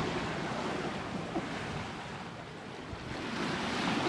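Steady rush of sea water and wind aboard a sailing catamaran under way, with wind buffeting the microphone.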